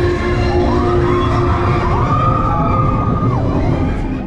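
Slinky Dog Dash roller coaster in motion: a loud rumble of the train and rushing air on the microphone. Over it, a long held high cry rises, holds and falls, the kind of cry riders give, with the ride's music faintly underneath.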